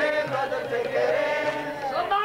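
A man's voice chanting a devotional song in long, held notes that bend slowly in pitch.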